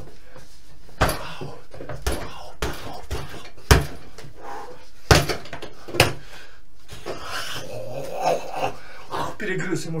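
Punches landing on a hanging punching bag: about six sharp hits over the first six seconds, the loudest near four seconds in.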